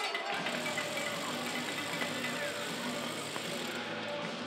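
Ice hockey arena crowd chatter with music over the public-address system, the music's steady low tones coming in about a third of a second in.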